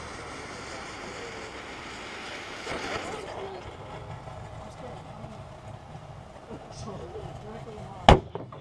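Steady hiss of a lit firework mortar's fuse burning down inside an old microwave, with a brief louder rush about three seconds in. Faint voices are heard near the end.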